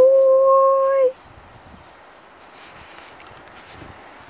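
A dog gives one steady, high whine about a second long at the start, holding one pitch throughout.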